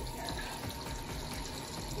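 Water pouring steadily from the fill inlet of an American Home 6 kg top-load washing machine into its open tub and splashing onto the clothes, during the machine's first fill.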